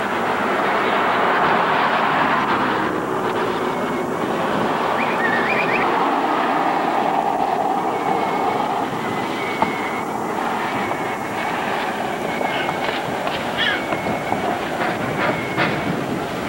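Steady, dense outdoor background din picked up by an old camcorder microphone, with a faint high tone that comes and goes and a few short high chirps about five seconds in.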